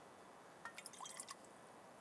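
Near silence, broken a little over half a second in by a quick run of faint small clicks and clinks lasting under a second.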